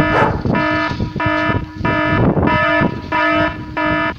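An electronic alarm sounding in repeated on-off blasts, about one and a half a second, each a steady buzzing tone.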